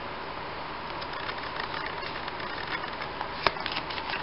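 Faint rustling and light clicks of Pokémon trading cards being handled and rearranged in the hands, with one sharper tap about three and a half seconds in.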